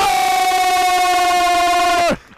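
A sports commentator's long, drawn-out goal shout, a single high vowel held at one pitch for two seconds.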